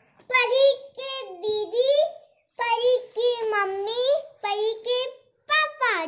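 Young child singing or chanting in a high, sing-song voice, in several short phrases with brief pauses between them.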